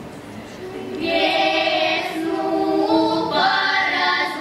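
A girls' folk vocal ensemble singing together, the voices coming in strongly about a second in after a brief quieter moment.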